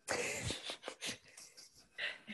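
A man laughing in breathy bursts: a loud first burst that starts abruptly, then a few shorter huffs that trail off.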